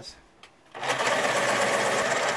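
Electric pencil sharpener running as it grinds a pencil to a point. The motor starts about a second in and runs steadily.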